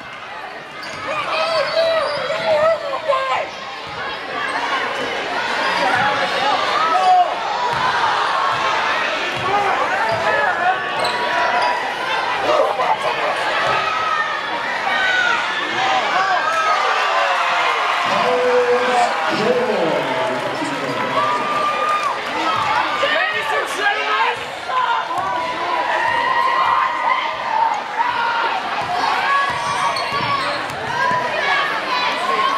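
A basketball being dribbled and bouncing on a hardwood gym floor during play, over the steady chatter and calls of a crowd of spectators echoing in a large gym.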